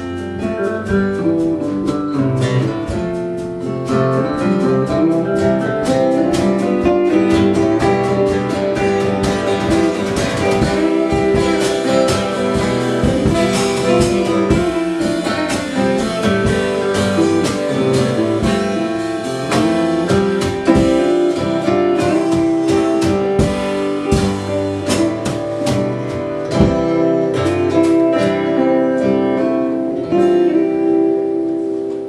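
Live rock band playing an instrumental passage: an electric lead guitar over strummed acoustic guitar, with drums and cymbals keeping the beat.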